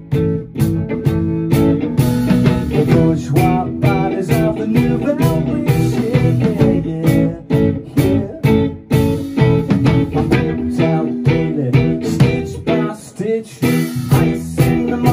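Live band playing a pop-rock song: electric guitar, bass guitar and drums with a steady beat.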